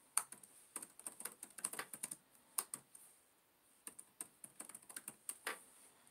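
Typing on a computer keyboard: irregular runs of quick key clicks, with a short pause about three seconds in.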